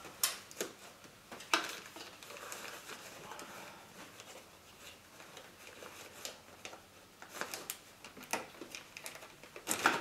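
Scattered light clicks and taps of pliers and a plastic release ring working on the fuel line's quick-connector at the fuel rail, with a quicker run of clicks near the end.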